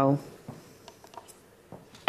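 A voice says "Vowel". Then come a few faint, scattered clicks and taps as a card is drawn from the vowel pile and stuck onto the game-show letters board.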